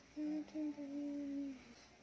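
A child humming a thinking "mmm" in two held notes at a fairly level pitch, a short one and then a longer one.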